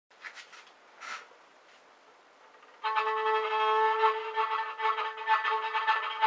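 A few faint rustles, then violin music begins about three seconds in, with a long held note followed by further notes.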